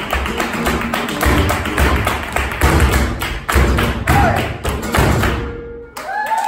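Flamenco footwork (zapateado): a male dancer's shoes striking the stage in fast, irregular rhythms over flamenco music. The strikes stop abruptly near the end.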